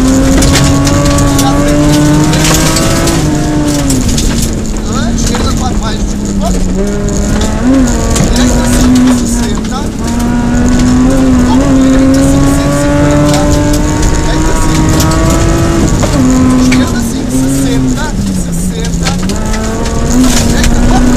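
Rally car engine heard from inside the cabin, pulling hard at high revs. Its pitch climbs slowly and drops sharply at gear changes about 3.5 s in and again near 16 s, and it dips when lifting off around 6 to 7 s and near 19 s. Steady road noise runs underneath from the loose dirt surface.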